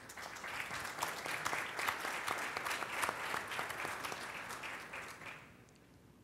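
Audience applauding, a dense patter of many hands clapping that fades out about five and a half seconds in.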